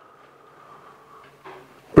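Quiet workshop room tone with a faint soft knock about one and a half seconds in, then a man's voice begins at the very end.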